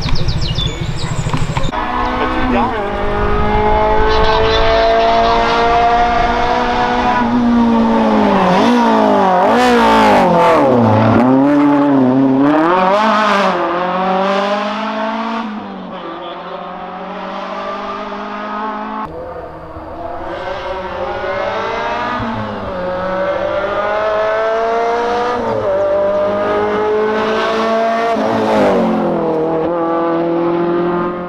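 Rally car engines at high revs, climbing in pitch through the gears and dropping sharply on lifts and shifts as the cars drive a stage, in several clips joined by abrupt cuts.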